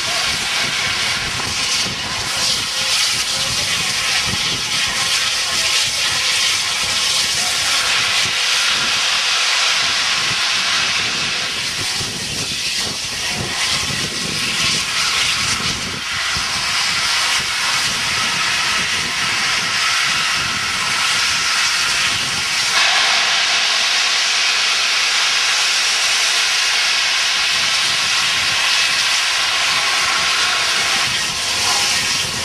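Bulleid Battle of Britain class 4-6-2 steam locomotive 34067 Tangmere releasing steam in a loud, steady hiss, which turns brighter and more even about three-quarters of the way through.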